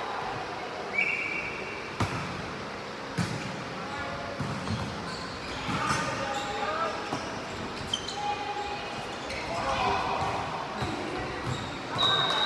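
Volleyball rally in an echoing gym hall: the ball is struck with a few sharp smacks, the clearest about two and three seconds in, along with short high squeaks and players' voices calling.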